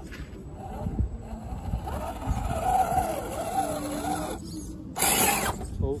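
Scale RC crawler truck's electric motor and gearbox whining as it crawls over a rock, the pitch rising and falling with the throttle. A short, loud rush of noise comes near the end.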